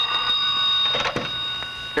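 Old telephone bell ringing steadily on one continuous ring that stops shortly before the end, when the receiver is picked up.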